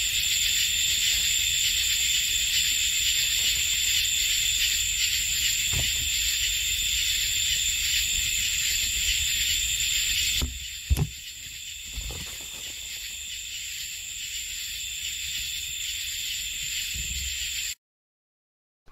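Night-time field recording from a handheld Zoom recorder standing on a log: a steady high-pitched hiss of night ambience with a low rumble, broken by a few knocks and bumps. About ten seconds in, the whole sound drops in level, followed by more knocks. The hosts take this for something picking the recorder up and setting it back down, with what almost sounds like a couple of footsteps approaching.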